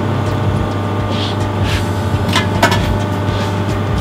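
Steady low machine hum, with a few faint light clicks of a hex key on the steel backgauge probe block as its locking screws are done up.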